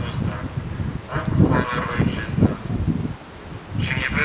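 Wind buffeting the microphone, with a short stretch of a voice through a horn loudspeaker in the middle.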